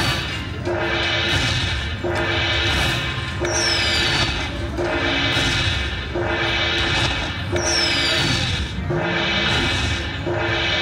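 Dragon Link slot machine tallying its hold-and-spin bonus: a short electronic jingle repeats about once a second as each prize is added to the win meter, with a falling whistle every few seconds.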